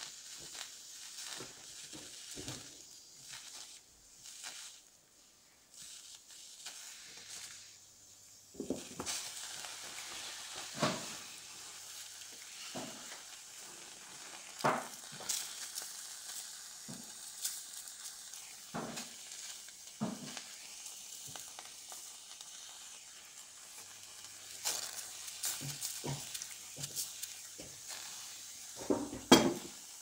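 Field mushrooms (Agaricus campestris) sizzling on aluminium foil over heat: a steady hiss that comes up about a third of the way in, with scattered sharp pops and crackles throughout.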